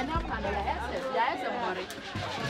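Indistinct chatter of several people talking over one another in a busy market.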